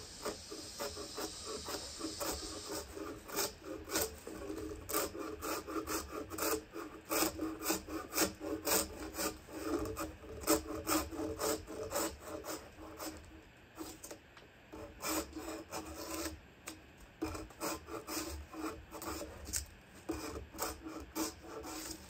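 Drawknife peeling bark off a log in repeated short pulled strokes, the blade rasping and scraping along the wood, with brief pauses between runs of strokes.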